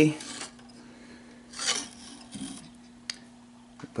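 Hands handling the amplifier's metal tube-socket plate and its parts: a brief rubbing scrape about a second and a half in, a softer one after it, and a couple of small clicks near the end, over a faint steady hum.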